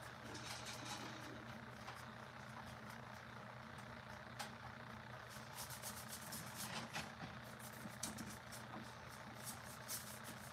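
A faint, steady low hum, with scattered small clicks and taps that come more often in the second half.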